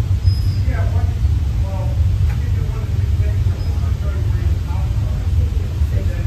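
Steady low rumble of an indoor shooting range's air handling, with faint muffled voices about a second in; no shots are fired.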